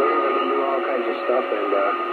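CB radio receiving long-distance skip: garbled, overlapping voices with a steady heterodyne whistle, all squeezed into the radio speaker's narrow, thin band.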